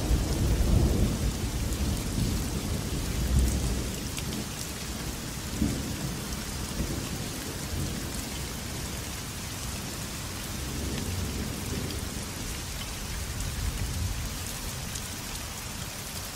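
Steady rain of a light thunderstorm, with a low rumble of thunder in the first few seconds that fades away.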